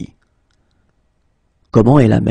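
A voice speaking a French phrase, cut off just after the start, then a pause of about a second and a half with a couple of faint clicks, then the voice starting the phrase again near the end.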